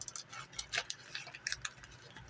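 Irregular small clicks and crinkles of a Pepperidge Farm Milano cookie package being handled and pulled open by hand.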